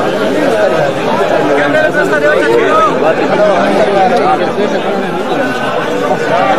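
Crowd chatter: many men's voices talking over one another, steady throughout.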